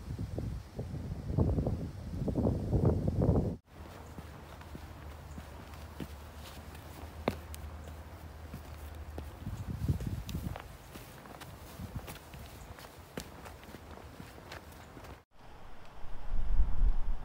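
Footsteps of a hiker walking a dirt trail and over a weathered wooden log footbridge: scattered light ticks and knocks at an uneven walking pace. For the first few seconds a louder low rumble of wind on the microphone covers them.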